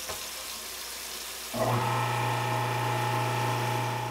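Tap water running into a kitchen sink drain, then about one and a half seconds in a garbage disposal motor starts and runs with a steady hum. The disposal is running again after its binding blades were worked loose by hand from the underside.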